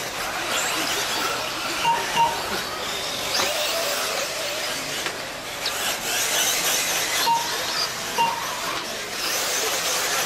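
Brushless electric 1/8-scale RC buggies running on the track, their motors whining up and down with the throttle over steady tyre and track noise. Short electronic beeps sound in pairs about two seconds in and again around seven to eight seconds.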